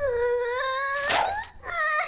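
A voice-acted child character wailing in a long, high, steady cry that breaks off about a second in and starts again near the end.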